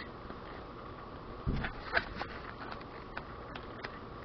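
Paper pad being handled and its pages turned: a few faint rustles and light taps, the clearest about a second and a half in, over a steady low hiss.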